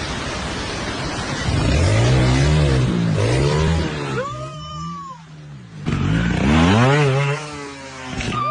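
Trials motorcycle engine revved in a run of quick throttle blips, each a short rise and fall in pitch, with a brief lull a little past the middle before the blips resume.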